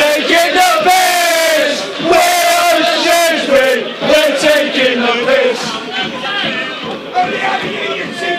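Football crowd in the stand chanting a repeated line in unison, many male voices singing together. The chant dies away after about five seconds, leaving looser crowd noise.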